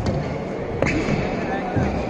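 Badminton rally on an indoor court: two sharp racket hits on the shuttlecock less than a second apart, with sneakers squeaking on the court floor, over the chatter of spectators in a large hall.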